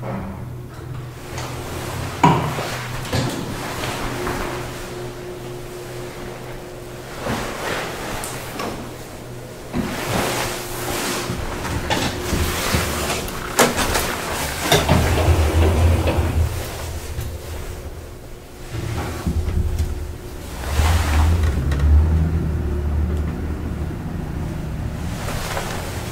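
Traction elevator in use: door clicks and knocks as the doors work, then the car travelling with a low hum that swells twice, under a faint steady tone.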